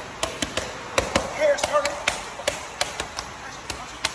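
Boxing gloves smacking into focus mitts in a quick run of punches, several sharp slaps a second, about fifteen in all.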